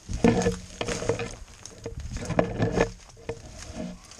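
Footsteps crunching through crusted snow and dry leaf litter, in two loud stretches: one of about a second near the start and a shorter one past the middle.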